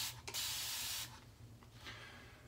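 Blackland Vector single-edge safety razor with a Feather Pro Super blade scraping through lathered stubble: a short stroke right at the start, then a longer stroke of under a second.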